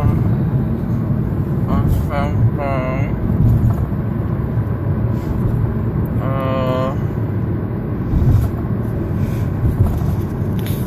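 Steady low rumble of road and engine noise inside a moving car's cabin. A few short vocal sounds break in about two seconds in and again about six seconds in.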